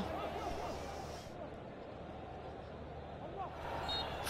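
Faint stadium ambience between bursts of commentary: a low crowd murmur with a few distant voices calling.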